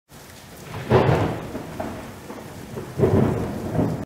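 Thunder rumbling over steady rain, with two rolls, one about a second in and another near the end, each swelling and then fading.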